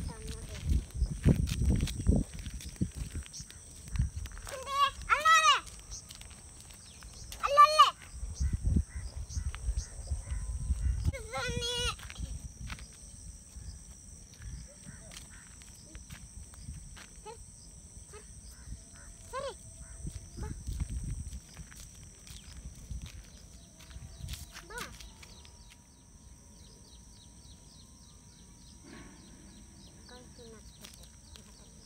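An animal calling several times, each call short with a wavering pitch, the loudest about five, eight and twelve seconds in and fainter ones later. Low wind rumble on the microphone comes and goes.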